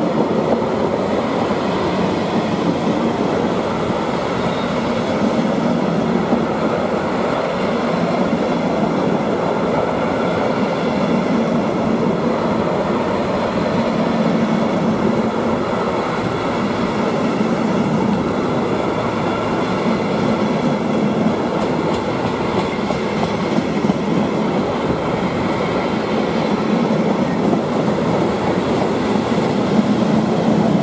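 Freight train of flat wagons rolling past at steady speed: a continuous rumble and clatter of wagon wheels on the rails.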